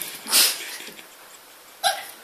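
Puppy giving two short barks, the louder about half a second in and another near the end, barking at a lemon it is afraid of.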